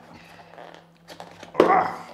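Biodegradable clamshell food box being pried open by hand: faint rustling, then a few sharp clicks as the lid comes loose, followed by a loud exclaimed "oh".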